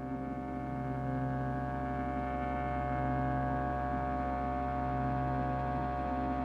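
LayR multi-timbral synthesizer on an iPad sounding a cinematic pad preset: one held note sustains as a steady, slowly evolving drone with many overtones, swelling slightly about a second in.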